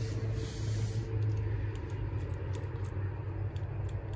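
A steady low hum with a few faint ticks, and no engine cranking: the fire truck's starter does not turn over when the key is tried, because the battery master disconnect is still off.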